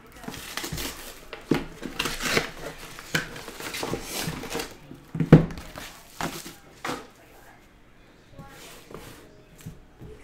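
Paper wrapping being torn and cardboard boxes handled, in a run of irregular rustles and scrapes, with a loud thump about five seconds in. It goes quieter after about seven seconds.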